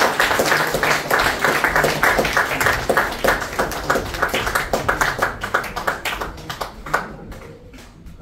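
Audience applauding. The clapping thins out over the last few seconds, leaving a few scattered claps near the end.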